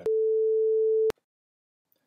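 A single steady electronic bleep lasting about a second, starting and ending with a click and followed by silence. It is a censor bleep dropped over the end of a spoken sentence.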